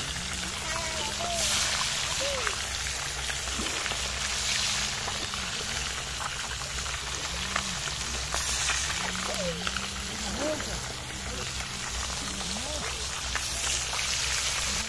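Fish deep-frying in a pan of hot oil over a wood fire: a steady sizzle and crackle of bubbling oil.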